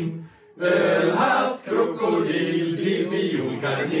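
A group of men and women singing a Swedish drinking song (snapsvisa) together, in sung phrases broken by a short pause about half a second in and another near the end.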